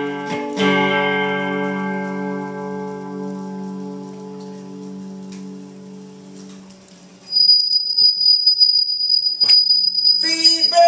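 Hollow-body electric guitar through an amplifier: a final strummed chord rings out and slowly fades over several seconds. About seven seconds in, a loud, steady, high-pitched whine comes in suddenly, and there is a single sharp knock near the end.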